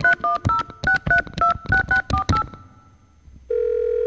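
A phone number being dialled on a touch-tone telephone: about a dozen quick two-tone beeps in a row. Near the end a steady ringing tone starts as the call goes through.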